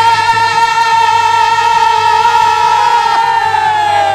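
A group of men singing a bhajan, holding one long note over a harmonium with light dholak beats. The held note slides down and fades near the end.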